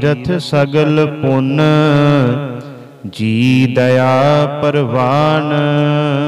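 A man's voice singing a line of Sikh scripture (Gurbani) as a slow, melodic chant, holding long notes that bend in pitch. There is a short break about three seconds in, and the voice fades near the end.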